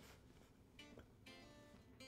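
Fender Telecaster electric guitar strummed faintly, two chords about half a second apart, the second left ringing.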